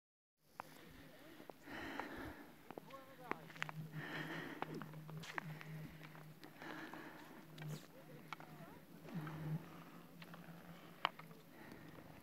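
Ice skate blades scraping across clear black lake ice, one long stroke every two to three seconds, with sharp clicks in between.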